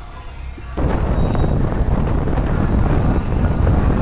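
Wind buffeting the microphone in a loud, even low rumble, with sea surf behind it. It cuts in suddenly just under a second in.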